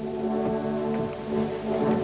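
Opera orchestra playing sustained, slowly changing chords led by brass, in a live performance with no voice singing.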